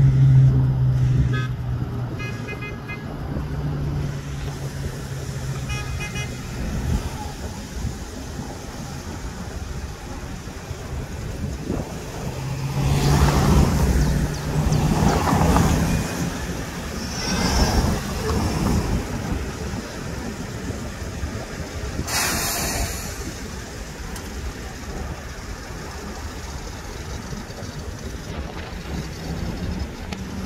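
City street traffic: buses and cars running in slow traffic. A long low steady tone sounds near the start and again about halfway through, and a louder stretch of vehicles moving off comes in the middle.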